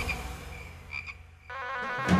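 Two short, high frog croaks in a quiet night-time barnyard ambience, near the start and about a second in. A soft musical tone swells in near the end.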